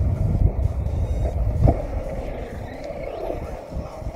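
Wind buffeting the camera microphone with a heavy, uneven rumble, over the faint whine of a Traxxas Stampede 4x4's brushless electric motor rising and falling as the truck drives. There is a short knock about a second and a half in.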